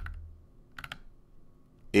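A few sharp computer clicks as a web page is scrolled: one at the start, then a quick pair just under a second in.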